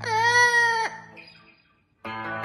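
Yellow-headed amazon parrot singing one loud held note. The note swoops down at the start, then holds steady and breaks off abruptly just under a second in. A short near-silent gap follows before the electric guitar comes back in at the very end.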